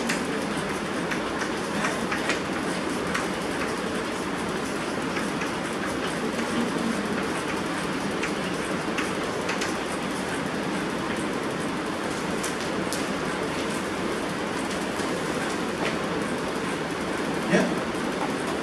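A steady rushing room noise runs throughout, with faint chalk taps and scrapes on a blackboard as words are written.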